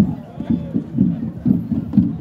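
Footsteps of a person walking briskly on soft grass, low thuds about two a second with handling bumps on the phone, over a faint murmur of a crowd.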